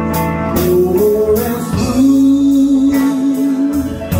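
Live band playing a slow blues-country ballad: a climbing run of notes, then one long held note with vibrato, most likely the electric guitar, over bass, keyboard and drums.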